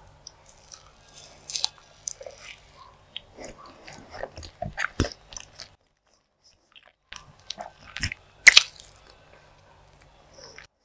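Close-miked chewing of a forkful of chocolate-glazed sponge cake: moist mouth smacks and clicks in clusters, with a short pause a little past halfway and the loudest smack near the end.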